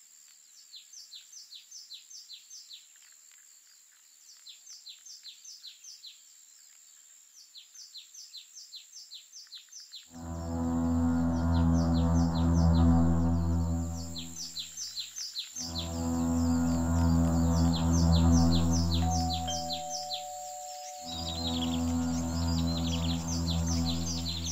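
High, rhythmic chirping in short runs, repeated several times a second. About ten seconds in, a loud, low, steady droning note starts and is held three times for several seconds each, with short breaks between.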